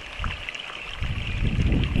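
Wind rumbling on the microphone, louder from about halfway through, over the faint steady trickle of a shallow stream.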